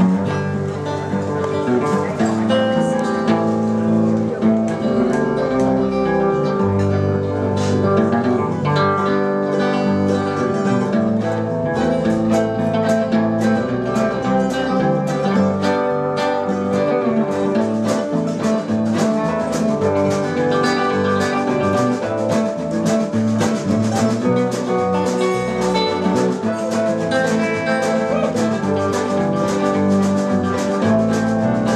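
Live string band playing an upbeat tune, led by guitar and mandolin with a fast, steady picked rhythm.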